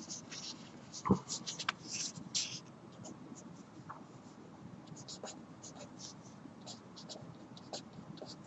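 A marker pen writing on paper in short, scratchy strokes, in clusters with pauses between.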